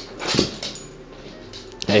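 A cocker spaniel making one brief sound about half a second in.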